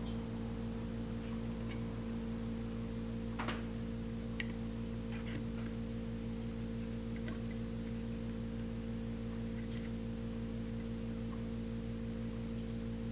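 Steady electrical hum, with a few faint small clicks and ticks of resistor leads being pushed into a plastic breadboard.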